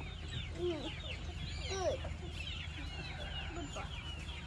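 Chickens clucking: two short, lower calls, about a second in and near two seconds in, the second the louder, over continual high chirping from birds.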